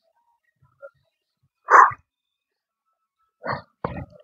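Forceful breaths out during a weighted crunch and leg-raise exercise: one loud, short huff about two seconds in and a smaller one near the end. A sharp knock follows just before the end, as the weight plate is set down on the mat.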